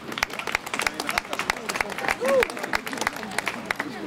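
A small group of people clapping, with the separate claps distinct and irregular.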